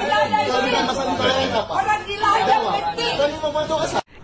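Several people talking loudly over one another in an angry argument. The voices overlap so thickly that no single speaker stands out.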